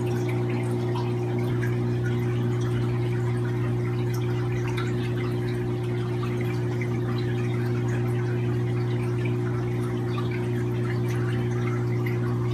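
Aquarium filter pump running: a steady low hum with a faint trickle and fizz of water.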